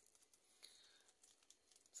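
Near silence with faint, scattered rustling and small crunching clicks of guinea pigs chewing and tearing cauliflower leaves.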